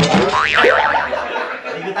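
A cartoon-style spring "boing" sound effect, a wobbling pitch that swoops up and down about half a second in.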